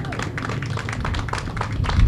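Applause from a small audience: many hands clapping in overlapping, irregular claps.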